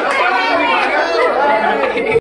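A group of people talking over one another in lively overlapping chatter.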